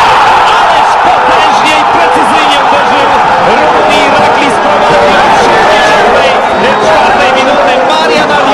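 Stadium crowd cheering at a goal, a loud, sustained roar of many voices.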